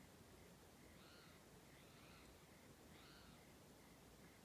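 Near silence, with three faint bird chirps about a second apart.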